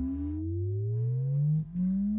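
Electronic music: a synthesizer tone with a rising pitch sweep that climbs steadily, drops back low about one and a half seconds in, and starts climbing again.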